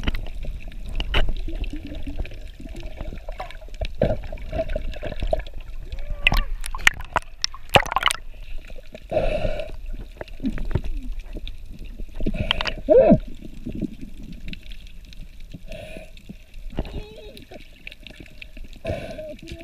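Water sloshing and gurgling around an action camera held underwater, with a steady low rumble and scattered sharp clicks, a cluster of them about halfway through. Short muffled voices come through the water now and then.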